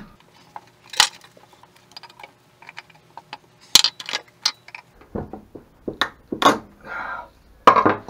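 A screwdriver levering an alternator's stator and internal assembly out of its aluminium housing. It makes irregular sharp metallic clicks and knocks, with some scraping between them.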